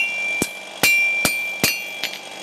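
Blacksmith's hammer striking iron on an anvil: five evenly spaced blows, about two and a half a second, each leaving a high metallic ring, as the heated iron is forged into shape.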